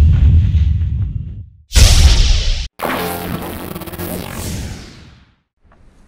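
Intro logo sound effects: a heavy whoosh-and-boom fading away, then a second sharp hit about two seconds in, followed by a ringing musical tone that dies out by about five seconds in. Faint outdoor background noise comes in near the end.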